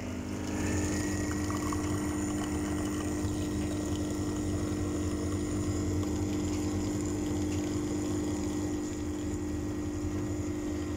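Coffee machine's pump running with a steady buzzing hum as it dispenses a drink in two thin streams into a cup.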